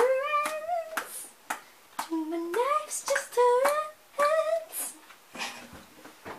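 A young girl's voice singing a short made-up tune without clear words, the notes sliding up and down in two phrases with a pause between. Sharp clicks fall between the notes.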